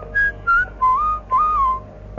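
Carnatic bamboo flute playing about five short, breathy phrases in raga Shuddha Saveri, with sliding ornaments between notes and no drum strokes under it.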